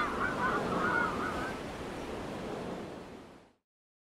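A steady wash of surf-like noise with wavering, honking bird-like calls in the first second and a half. It fades out to silence just before the end.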